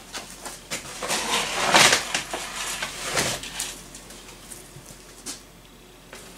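Rabbit feed pellets being scooped and poured with a metal scoop: a noisy run of about three seconds, loudest near the middle, then a lone click about five seconds in.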